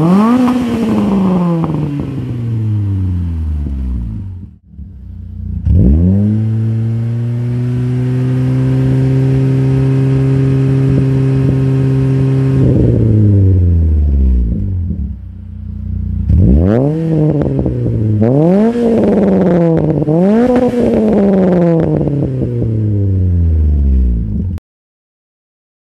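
Renault Clio III RS's 2.0-litre naturally aspirated four-cylinder revving through a stainless cat-back exhaust with RM Motors mufflers and a sport secondary catalytic converter. A rev dies away at the start, then after a brief drop-out the engine is raised sharply and held at a steady high rev for about six seconds before falling back. From about two thirds of the way in it is blipped sharply several times, each rev rising and falling quickly, and the last one dies away slowly.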